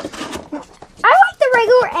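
Cardboard box rustling and clicking as it is opened. About a second in, a high-pitched voice takes over, making a drawn-out vocal sound that slides up and down in pitch.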